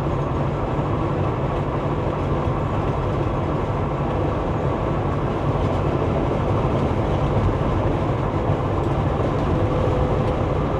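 Peterbilt 389 glider semi truck's diesel engine running steadily at highway cruising speed, with tyre and road noise, a constant low drone that does not change.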